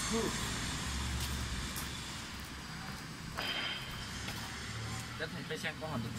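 Steady low hum of outdoor machinery or traffic in a factory yard, with a sharp knock about halfway through and a few words of a man's voice near the end.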